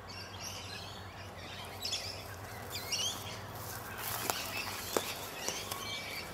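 Wild birds chirping and twittering in short curving calls, with a steady outdoor background. A couple of faint knocks come near the end.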